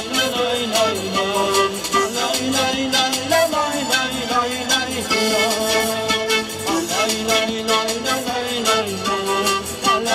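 Andean-style panpipe melody in held notes, with percussion keeping a steady beat underneath; an instrumental break in the song with no singing.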